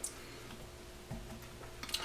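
Light handling clicks and a soft thump as a plastic honey uncapping fork is picked up, over a faint steady room hum.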